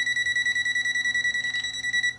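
TESMEN TM510 multimeter's non-contact voltage detector beeping rapidly, about ten high-pitched beeps a second. This is its close-range warning that live mains voltage is near.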